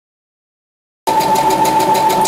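Silence, then about a second in a Brother XR1300 computerized sewing machine cuts in already running, stitching: a steady hum with rapid, even ticking of the needle strokes.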